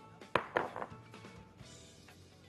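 A glass bowl knocking and clinking as it is lifted and moved, two sharp knocks within the first second, over faint background music.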